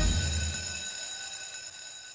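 Intro jingle ending on a held chord: the beat stops and the steady ringing chord slowly fades away.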